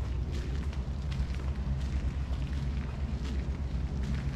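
Steady low rumble of wind buffeting the microphone, with faint light ticks scattered through it.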